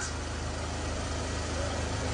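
A steady low hum under a faint even hiss, with a faint voice just before the end.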